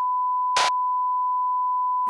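Steady 1 kHz test tone, the bars-and-tone signal that goes with a television colour-bar test card, broken about half a second in by a short burst of noise.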